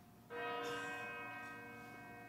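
A bell-like chord of several steady pitches comes in suddenly about a third of a second in and slowly fades.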